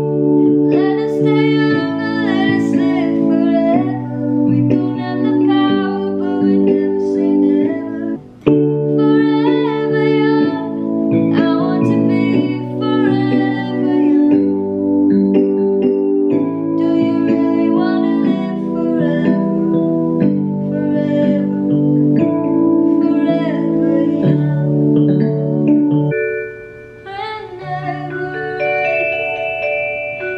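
Donner DEP-20 full-size, fully weighted 88-key digital piano played in sustained two-handed chords. About 26 s in the sound drops back and gives way to higher, bell-like notes.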